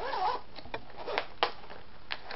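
A zipper on a clear vinyl bag being pulled open, with several short rasping strokes and clicks, and the plastic crinkling as the bag is handled. A brief pitched sound comes right at the start.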